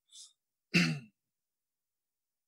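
A man breathes in faintly, then clears his throat once, briefly, about three-quarters of a second in.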